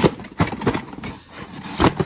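Cardboard box holding a metal shower head and hose being handled and set down: a few knocks and scrapes of cardboard, the loudest just before the end.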